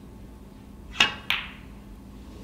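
Snooker cue tip striking the cue ball, then about a third of a second later a second sharp click as the cue ball hits a red.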